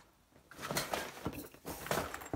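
Items being packed into a large tennis bag by hand: fabric rustling with a few light knocks and clicks, starting about half a second in after a brief near-silent moment.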